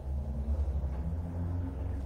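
Steady low rumble in the room between spoken phrases.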